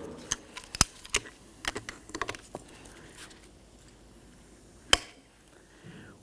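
Light metallic clicks and taps as locking pliers are handled and set onto the top of a shock absorber's piston rod, then one sharp snap near the end as the pliers lock onto the rod.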